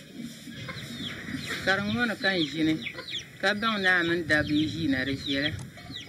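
A hen clucking, heard from about a second and a half in, with people's voices around it.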